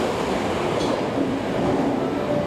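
Subway train rolling slowly along the platform as it comes to a stop: a steady running noise of wheels and motors with a faint drawn-out tone, and a brief high squeak about a second in.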